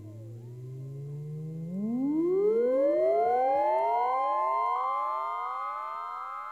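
Synthesized rising sweep in the intro of a hip-hop track: a low hum, then many layered tones gliding upward together, growing louder and levelling off at a high steady pitch.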